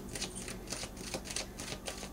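Quiet, quick light clicking, about five clicks a second, over a faint steady hum.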